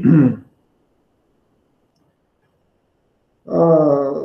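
A man's voice says a word, then about three seconds of dead silence, then his voice comes back near the end.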